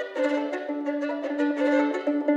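Solo violin bowed in double stops: a steady low drone note is held underneath while the upper notes change quickly above it, in a bright, reverberant hall.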